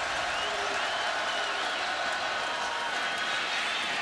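Steady stadium crowd noise at a football game: a continuous roar from the stands with faint scattered voices in it.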